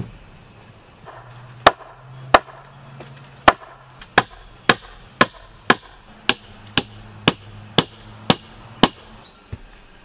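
A hammer striking on the log roof of a dugout shelter: about thirteen sharp blows, a little uneven at first and then about two a second, some with a faint metallic ring.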